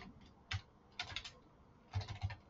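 Keystrokes on a computer keyboard: a few separate key clicks, one about half a second in and a quick run of three or four about a second in.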